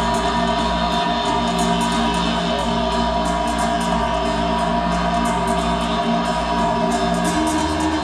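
Live post-metal band playing: sustained, dense guitar and bass chords under a singing voice, with a steady cymbal beat; the bass note shifts near the end. Heard from the audience in a hall.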